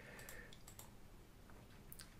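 Near silence: faint room tone with a few soft computer clicks, one just before the end, as the presentation is advanced to the next slide.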